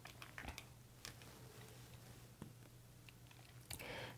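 Near silence: room tone with a faint steady low hum and a few faint, brief clicks.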